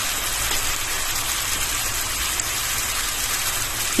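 Sliced carrots, bell pepper and onion sizzling steadily in a frying pan of sweet-and-sour sauce.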